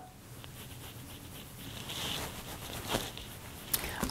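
Faint rustling and a few soft clicks as a makeup brush is handled, with one sharper click near the end.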